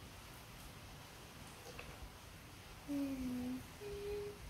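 Young girl humming two short notes near the end, the first dipping slightly and the second a little higher. Before that, faint handling of small plastic toy pieces with one small click.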